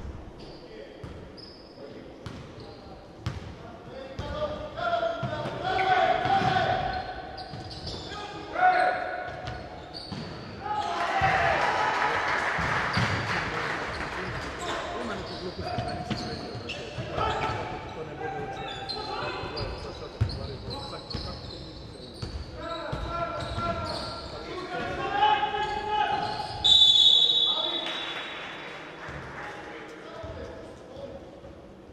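Live basketball in an echoing sports hall: a ball bouncing on the hardwood court, shoes squeaking, and players and spectators shouting. There is a louder stretch of crowd noise about midway, after a basket, and a referee's whistle near the end that stops play.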